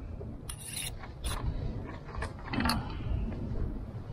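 A few light clicks and clinks of a metal spork and knife handled and set down against a stainless steel camp plate and table, over a steady low rumble.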